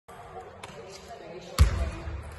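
A basketball bounces once on a sports hall floor about three-quarters of the way through: a single deep thud that rings on in the hall, over a low murmur of voices.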